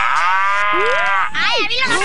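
A long drawn-out moo-like call that slides down in pitch, then breaks into a fast high waver about a second and a half in.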